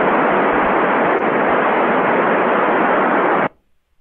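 Radio receiver static: a steady hiss on the ISS downlink with no reply yet to the ground station's call. It cuts off suddenly about three and a half seconds in.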